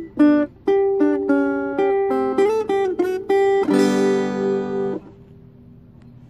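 Acoustic guitar playing a run of chords, one stroke after another. The last chord, struck a little before four seconds in, rings for about a second and is cut off suddenly, leaving only faint room noise.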